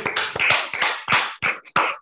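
A round of applause over a video call: quick, uneven hand claps, several a second, with brief gaps between them.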